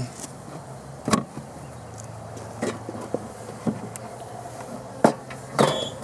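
Honey bees humming steadily around an open top-bar hive, with a few sharp wooden knocks and clicks as bars and boards are handled, the loudest about a second in.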